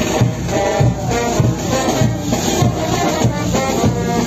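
Brass band dance music with a steady drum beat and rattling percussion.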